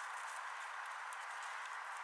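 Horse's hooves beating a regular trot on the sand arena footing, soft ticks about two to three a second, faint under a steady background hiss.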